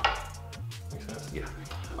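Background music with a low bass line, opened by one sharp knock as the plastic gimbal handle on its mini tripod is set down on a stone countertop.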